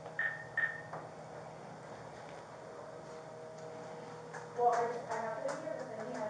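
Telephone handset: two short electronic beeps about a second in, then a faint voice from about four and a half seconds in as the call is placed.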